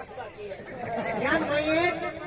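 Speech: an actor's voice in stage dialogue, starting after a brief lull.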